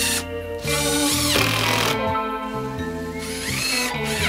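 Makita cordless driver running in three short bursts as it drives screws into the timber of a bird box, the middle burst the longest, each with a rising motor whine. Background music plays underneath.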